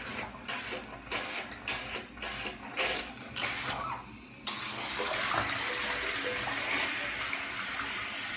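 Leather boots sloshing through water in a bathtub, with rhythmic splashes about two or three a second for the first four seconds. After a short lull, a steady rush of running water takes over and continues.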